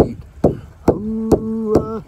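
Hand drum struck with a beater in a steady beat: five evenly spaced strikes, a little over two a second. From about a second in, a man's voice holds a sung 'uh' over them.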